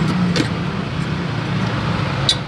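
Steady low hum of road traffic and engines, with one light click shortly after the start as a plastic jar lid is handled.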